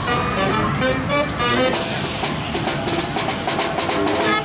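A live brass band playing, trombone among the horns, with steady percussion strikes joining in about one and a half seconds in.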